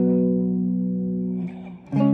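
Electric guitar power chord on the sixth, fifth and fourth strings ringing and fading out, then a second power chord struck just before the end.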